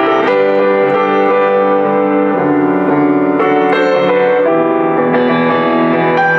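Boston GP-156 baby grand piano being played: full chords and melody notes ring on with sustain, and new notes are struck every second or so.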